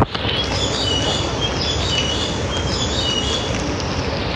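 Steady rushing outdoor noise with a few faint, short high-pitched chirps or squeaks scattered through it.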